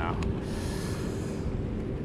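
Fishing line hissing off the reel for about a second during a cast, after a short click. Under it runs a steady low rumble of wind and harbour water.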